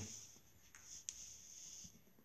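Faint scratching of writing on a surface, with a small tick about a second in.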